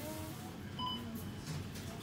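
A single short electronic beep from a supermarket self-checkout touchscreen terminal, a little under a second in, as a screen button is pressed.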